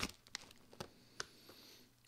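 A few faint crinkles and clicks from a just-opened plastic snack bag of pretzels, then a soft sniff of its contents near the end.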